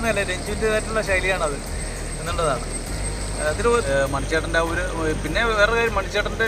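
A man speaking in short phrases over a steady low rumble.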